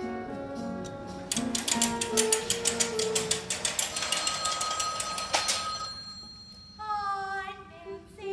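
Pit orchestra playing, then a telephone bell ringing rapidly for several seconds over the music. The ringing stops about six seconds in, and near the end a girl's voice begins singing.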